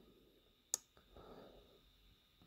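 Near silence, broken by a single short click about three quarters of a second in and a faint soft rustle a little later.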